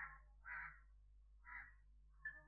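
A crow cawing faintly, three short caws about half a second to a second apart.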